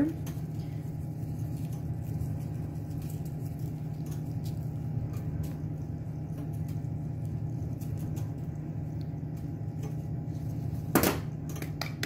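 Steady low hum of kitchen room tone with a few faint light ticks. About eleven seconds in comes a short clatter.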